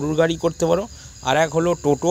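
A man talking, with a steady high-pitched chirring of crickets underneath.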